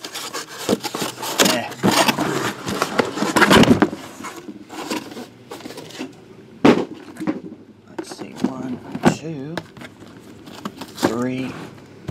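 Shrink-wrapped card boxes being slid out of a cardboard shipping box, with dense scraping and rustling, then a single knock about seven seconds in as a box is set down on the table.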